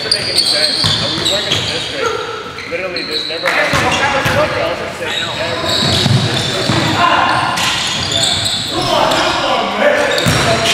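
Basketball game sounds in a gymnasium: the ball bouncing on the hardwood court, players calling out to each other, all echoing in the hall.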